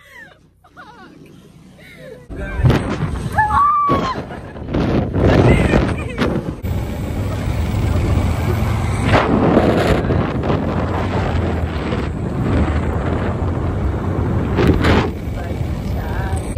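Wind rushing and buffeting over a phone microphone held out of a moving car, starting a little over two seconds in and carrying on loudly.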